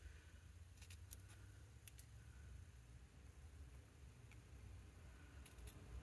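A few faint snips of small scissors cutting a thin paper strip into a pointed flag end, short clicks spaced apart over near silence.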